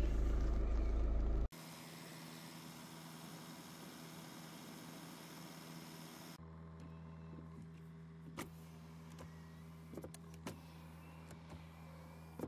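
A loud low rumble that cuts off abruptly about a second and a half in, then a steady low electric motor hum in a 2011 Hyundai Tucson ix cabin, fitting the driver's power seat being moved on its switch, with a few sharp clicks in the second half.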